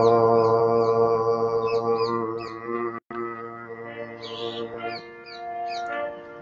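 A man's voice chanting one long, steady, low note that fades out about halfway through, with small birds chirping high above it.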